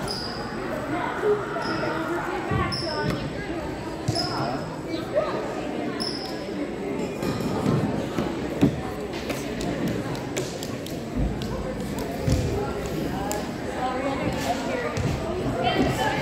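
Voices chattering in a large, echoing gym, with a ball bouncing sharply on the hardwood floor now and then. Short high squeaks come about once a second in the first half.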